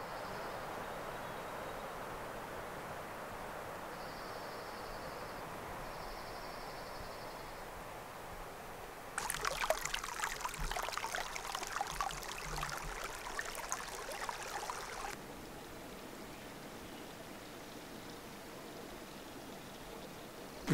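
A small mountain brook trickling and splashing over rocks, close by, loud for about six seconds in the middle. Before and after it there is a softer, steady outdoor hiss.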